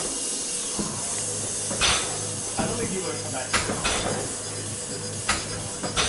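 Steady hiss with a low hum, and a short whoosh about every two seconds, in the stroke rhythm of a rowing machine's flywheel.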